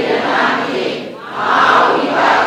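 Many voices reciting a text aloud together in unison, in swelling phrases of about a second each, as a class chants its lesson back.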